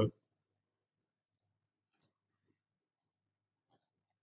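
Faint computer mouse clicks, about five spread over a few seconds, two close together near the end, with near silence between them.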